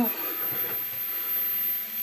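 Small brushed motors of a Hubsan X4 H107L quadcopter running steadily at minimum throttle, a quiet even whir.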